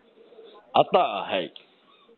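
A person's voice over a telephone line: one drawn-out vocal sound a little under a second long, falling in pitch, starting about three quarters of a second in.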